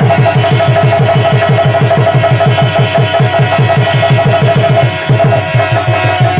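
Live stage-drama accompaniment: fast, even hand-drum beats, about six a second, under a sustained high held note. The drumming drops out briefly about five seconds in, then picks up again.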